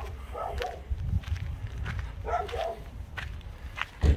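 A dog barking twice, with footsteps on a dirt road.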